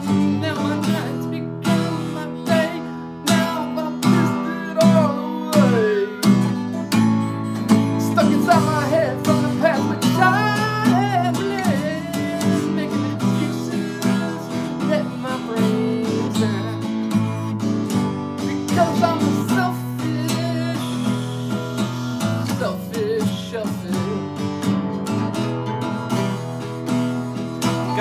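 Two guitars playing an instrumental blues jam: a steady strummed rhythm with picked melodic lines over it.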